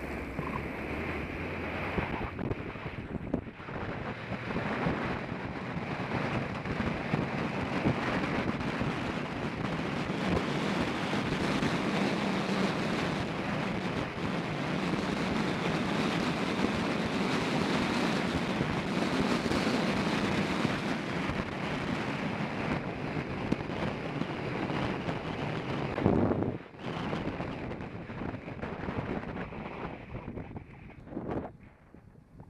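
Wind rushing over the microphone of a camera on a moving road bicycle, a steady noisy rush. It grows louder over the first few seconds, stays strong through the middle, and drops off sharply a few seconds before the end.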